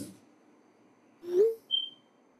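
Phone text-message sent sound: a short rising swoosh about a second and a half in, followed by a brief high ping as the message is delivered.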